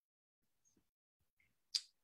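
Near silence broken by a single short, sharp click about three-quarters of the way through.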